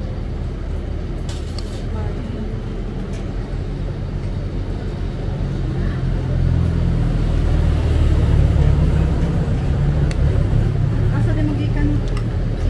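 Low engine rumble of a bus at the terminal, swelling about six seconds in and loudest a couple of seconds later.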